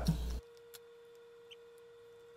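A low hum cuts off abruptly a fraction of a second in, leaving near silence: faint room tone with a thin steady tone and two faint ticks.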